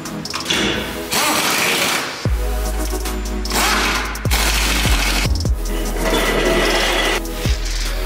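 Pneumatic impact wrench rattling in three bursts of about one to two seconds each as it works the bolts of a VW Transporter T4's engine undertray. Electronic background music with a steady beat plays under it.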